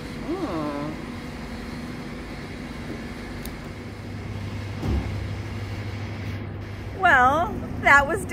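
A steady low mechanical hum that grows stronger about halfway through, with a short thump about five seconds in. A voice is heard briefly near the start, and a woman starts talking near the end.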